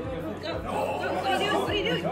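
Several people talking over one another in a room, with someone calling out "go, go" as encouragement.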